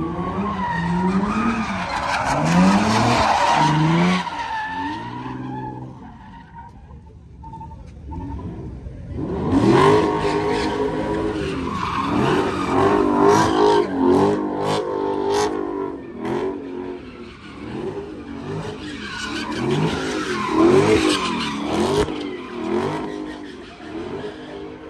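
A car engine revving hard again and again while its tyres squeal and skid as it spins donuts in tyre smoke. The engine and tyre noise ease off for a few seconds about six seconds in, then come back loud from about ten seconds.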